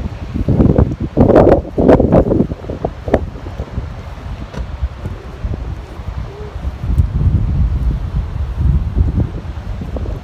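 Wind buffeting the phone's microphone in gusts, a loud uneven rumble that surges hardest in the first couple of seconds and again later.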